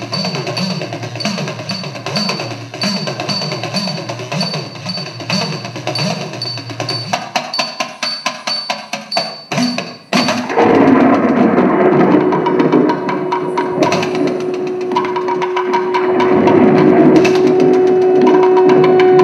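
Indian classical dance accompaniment music: a fast, even percussion rhythm of sharp wooden-sounding strikes. About ten seconds in it breaks off, and a louder passage follows with a long held wind-instrument note over a sustained backing.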